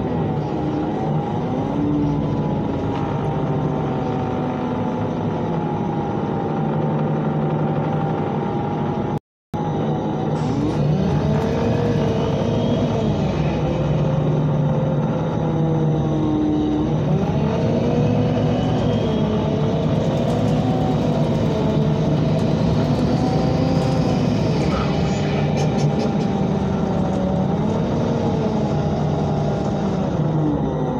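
MAN NL313 Lion's City CNG city bus heard from inside the passenger cabin, its gas engine and drivetrain running as the bus drives, with a steady low engine tone and higher whines that rise and fall repeatedly as it speeds up and slows. The sound cuts out for a moment about nine seconds in.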